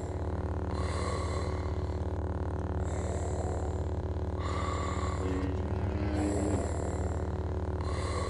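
Steady low electric hum of ignited lightsabers. Over it, Darth Vader's mechanical respirator breathing goes in and out in slow cycles, about two full breaths.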